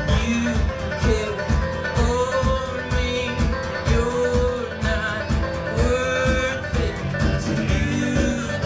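A live folk/Americana band plays, with acoustic guitar and banjo over a steady beat. A melody line on top holds long notes that slide from one pitch to the next.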